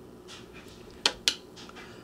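Two sharp taps about a second in, a quarter second apart: a makeup brush tapped against the eyeshadow palette to knock off excess powder.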